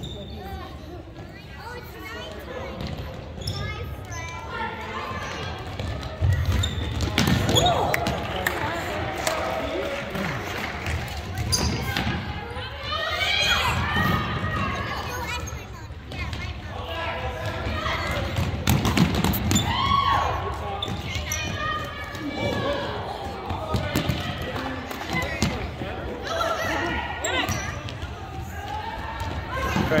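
A futsal ball being kicked and thudding on a hardwood gym floor again and again during play, with voices calling out over it, in a large gym hall.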